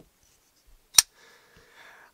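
A single sharp click about halfway through, with a faint rustle after it.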